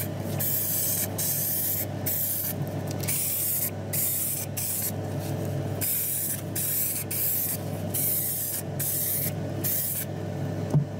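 Aerosol spray can hissing out paint in short bursts, about one a second with brief pauses between, over a steady low hum.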